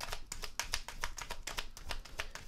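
Tarot deck being shuffled hand over hand, cards slapping against each other in a rapid run of soft clicks.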